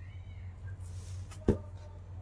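Hands handling a folded saree on a table: faint rustling and one sharp knock about one and a half seconds in, over a low steady hum.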